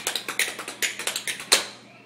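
Dance shoes tapping and scuffing on a hard floor in quick footwork, a rapid run of clicks with a sharper, louder one about one and a half seconds in.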